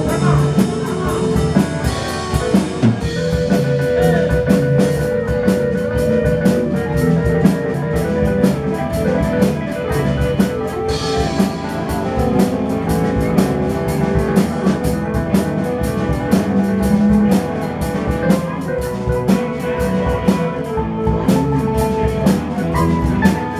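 Live rock band playing an instrumental passage: a drum kit keeps a steady beat under electric and acoustic guitars and keyboard.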